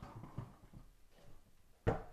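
Faint handling knocks as plastic mesh Wi-Fi router units are moved about on a wooden desk, with one sharp knock near the end as a unit is set down.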